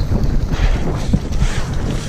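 Wind buffeting an action camera's microphone while a downhill mountain bike runs fast over a dirt track, its tyres rumbling on the dirt and the bike rattling and knocking as it jolts over bumps.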